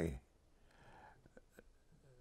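An elderly man's voice trailing off at the end of a word, then a faint breathy, whisper-like sound and two small clicks as he pauses to find his next words.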